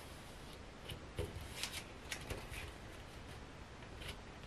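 Faint rustling and soft taps of a paper sewing pattern and a tape measure being handled on a cutting mat while the tape is walked along the seam line, with a few brief rustles between about one and two and a half seconds in.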